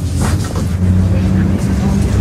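A motor vehicle engine running steadily as a low hum, with a steady higher tone coming in about a second in.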